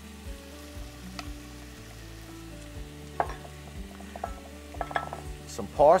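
Chopped onion, bell pepper and celery sizzling as they sauté in butter and olive oil in a Dutch oven, with a few light knocks of a spatula against the pot and bowl as the vegetables go in and are stirred.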